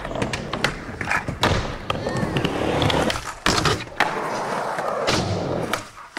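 Skateboard wheels rolling over wooden ramps, broken by several sharp clacks of the board striking the ramp and landing.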